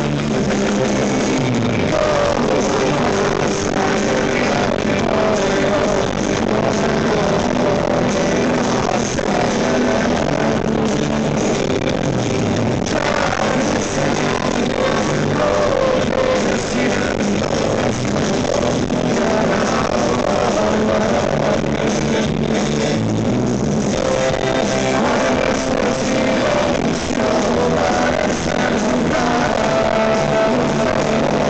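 Rock band playing live through a concert PA, with electric guitars over a steady beat, loud and continuous as heard from the audience.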